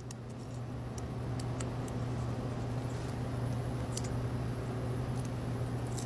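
A few faint, irregular clicks of a lock pick setting pins in a brass see-through practice lock, over a steady low hum.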